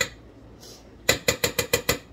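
A kitchen utensil tapping against cookware: one click, then about a second in a quick run of about seven sharp clinks, some eight a second, each with a short ring.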